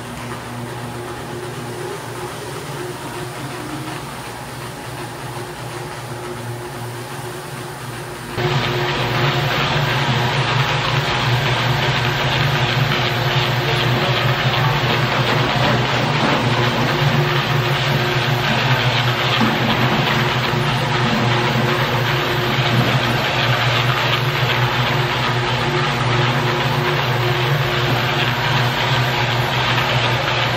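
A rotary floor machine runs steadily, its motor humming while the pad scrubs stripping solution over wet vinyl composition tile, taking the old wax off. About eight seconds in, the sound abruptly gets louder and fuller.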